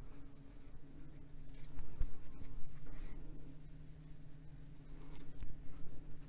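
Water brush pen rubbing over the paper in a few short, faint scratchy strokes, blending dry Inktense pencil colour, over a low steady hum.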